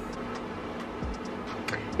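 Small space heater running: a steady whir with a low hum, and faint regular ticks about twice a second.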